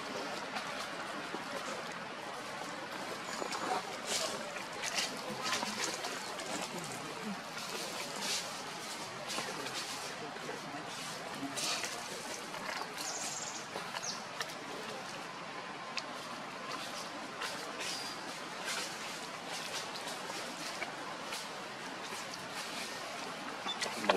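Outdoor ambience: a steady hiss of background noise with scattered small clicks and rustles and a few brief high chirps.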